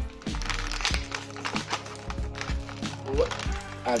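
Background music, with clear plastic blister packaging crinkling and crackling in short bursts as a small Grogu figure is worked out of its plastic bubble.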